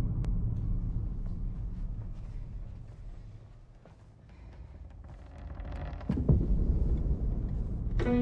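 Deep rumbling drone from the trailer's soundtrack. It fades to its quietest about halfway, then swells back up into a single sharp impact hit about six seconds in, with the low rumble continuing after it.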